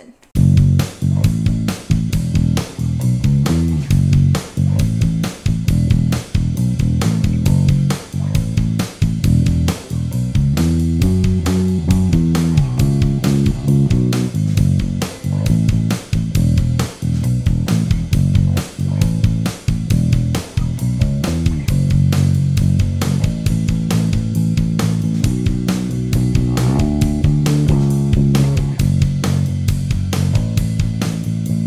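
KLŌS Apollo Pro electric bass, which has a carbon-fibre neck and passive electronics, playing a composed line of plucked notes with a few second apart-free runs up into higher notes. It is played clean through a small Phil Jones bass combo with its settings flat.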